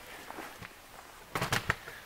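A hammer strikes the flat spot on a 1982 Corvette's front spindle in a few quick sharp blows about one and a half seconds in. The blows are meant to shock the press-fit ball joint stud loose from the spindle.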